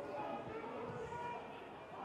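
Faint ambience of a football ground gone quiet, with distant voices.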